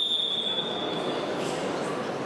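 A single steady, high-pitched whistle blast lasting about a second and a half, over the general murmur of a sports hall.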